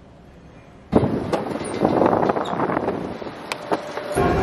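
Quiet room tone, then about a second in a sudden loud rustling and scraping of a cotton shirt rubbing against the camera's microphone, with scattered knocks and clicks from handling.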